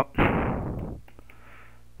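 A breath blowing across a close headset microphone makes a pitchless whoosh that fades within about a second. Faint keyboard clicks follow as a word is typed.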